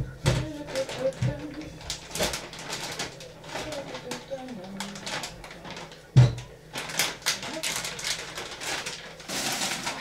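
Kitchen utensils and dishes clattering at the sink while a knife is washed: a run of clicks and knocks, one loud knock about six seconds in, and a short gush of running tap water near the end.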